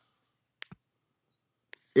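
Near silence broken by three faint, short clicks: two close together a little over half a second in, and one just before speech resumes.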